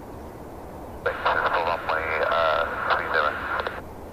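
Air traffic control radio transmission: a voice over a narrow-band radio channel, starting about a second in and stopping just before the end, over a steady low background rumble.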